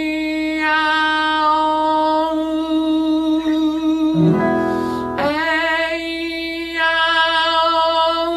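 A singer holds a long note with vibrato in a vowel-transition exercise, shifting from vowel to vowel on the same pitch. About four seconds in, an accompanying instrument plays a quick run of notes, and then the next long sung note begins.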